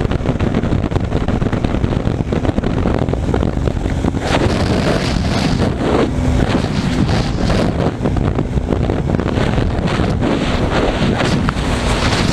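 Heavy wind rushing over a camera microphone on a KTM motorcycle at highway speed, about 100 km/h, with the bike's engine running steadily underneath.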